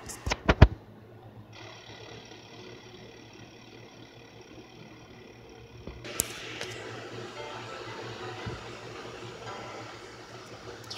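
A few quick knocks, then faint sound played through a small tablet speaker. A steady thin tone starts about one and a half seconds in, and at about six seconds it gives way to a louder, music-like rushing sound with a click.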